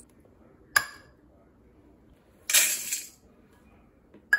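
A sharp metallic clink about a second in, then dry rolled oats tipped from a stainless steel measuring cup into a stainless steel bowl: a short rush of under a second.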